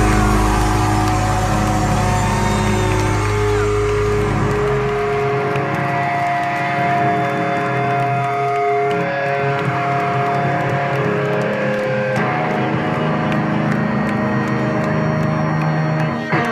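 Live rock band's electric guitars holding sustained, ringing notes without drums, the pitches changing every few seconds. The deep bass drops out about five seconds in.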